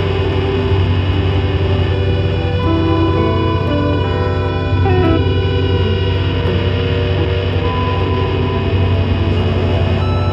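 Improvised experimental guitar duet: many held, layered guitar tones over a steady low drone.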